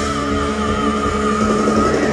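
Heavy metal band playing live with distorted guitars and drums, a long high note held with a wavering vibrato over the band.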